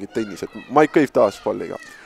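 Speech: a man's commentary voice talking in short, drawn-out syllables with gliding pitch.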